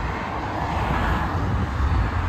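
Motorway traffic below: a steady rush of tyres and engines, swelling slightly about a second in.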